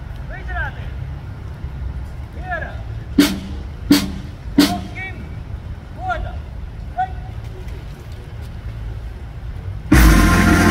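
Outdoor background rumble with short voices, and three sharp knocks evenly spaced about 0.7 s apart, a little over three seconds in. Right at the end a military brass band with drums strikes up loudly.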